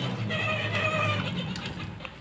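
Battery-powered ride-on toy motorcycle's electric drive motor humming steadily as it rolls forward, fading toward the end.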